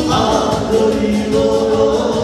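Live band playing dance music with singing over a steady beat.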